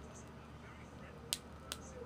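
Two short, sharp clicks about a third of a second apart against a quiet room background.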